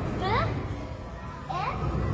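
A child's voice gives two short, rising calls about a second apart, over a low steady background rumble.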